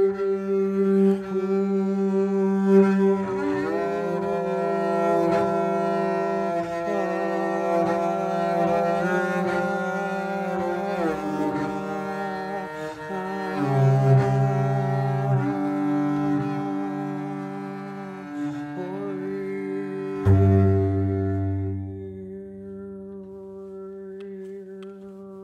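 Double bass played with the bow in a slow improvisation: long sustained notes over a steady low drone, sliding in pitch from note to note. About twenty seconds in, a sudden hard-attacked low note rings out and fades toward the end.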